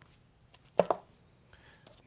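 Vinyl LP's cardboard jacket being handled, with a couple of quick knocks close together a little under a second in; otherwise quiet room tone.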